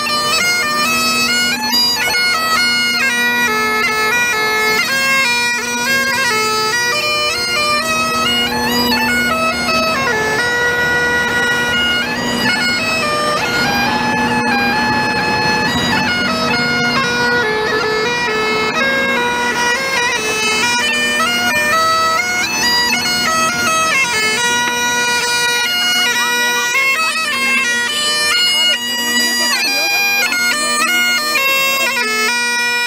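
Bagpipes played solo: a steady drone held under a chanter melody of quick stepping notes, running without a break.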